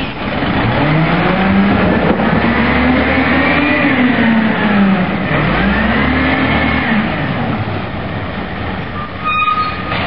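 Diesel engine of a Maxon Legal One automated side-loader garbage truck accelerating away from the curb: its pitch climbs, drops at a gear change about halfway through, climbs again, then levels off as the truck moves away.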